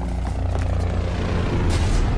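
A low vehicle engine rumble growing louder, with a brief rushing whoosh near the end.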